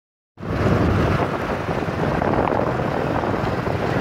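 Wind rushing over the microphone mixed with engine and road noise from a vehicle travelling at speed along a highway: a steady, heavy low rumble that starts a moment in, after a brief silence.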